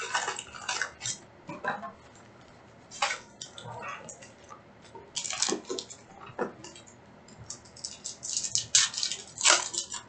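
Foil trading-card pack wrappers crinkling and a cardboard hobby box rustling as a stack of Panini Select packs is pulled out and handled, in irregular bursts that are loudest near the end.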